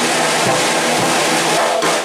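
Live traditional jazz band, with the drum kit and its cymbals to the fore: a steady wash of cymbal and regular drum strokes, with the horns only faint.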